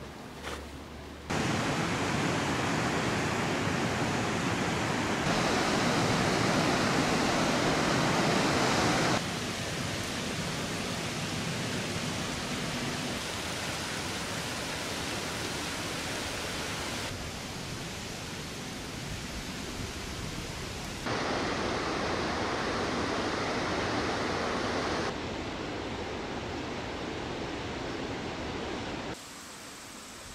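River water rushing over rock ledges, a steady wash of noise that jumps abruptly in level and tone about every four seconds as one shot cuts to the next. The first second or so is quieter.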